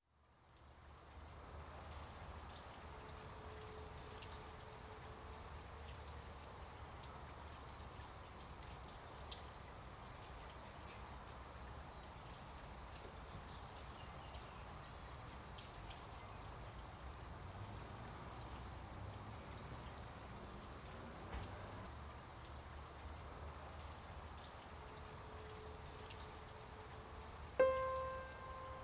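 A steady, shrill chorus of insects, fading in at the start and holding on unbroken. Just before the end a few pitched piano-like notes of music come in over it.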